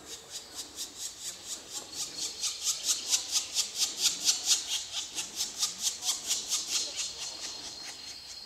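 Black woodpecker nestlings begging at the nest hole while being fed: a fast, rhythmic chatter of high rasping calls, about five a second, swelling loudest through the middle and easing near the end.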